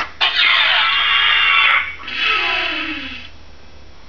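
Movie sound effects played through the DeLorean time machine replica's built-in sound system as it powers up: a click, then a loud hissing rush with falling tones lasting about two seconds, followed by a second, fainter falling hiss that dies away a little after three seconds in.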